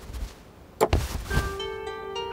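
A few dull thumps about a second in. Then plucked-string music starts with ringing, sustained notes.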